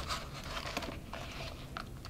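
Faint rustling and light ticks of linen thread and paper being handled as the stitches of a sewn pamphlet binding are tugged tight.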